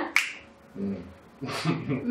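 A single sharp snap-like click near the start, followed by brief low voice sounds from the conversation.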